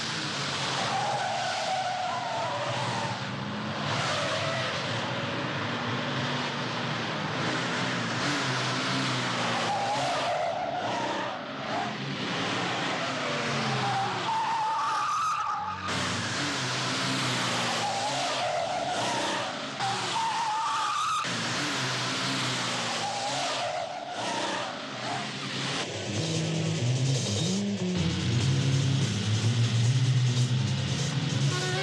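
Cars being driven hard in a chase, led by a 1973 Chrysler Valiant Charger: engines revving, with tyres squealing again and again through the corners. The engine note grows louder near the end.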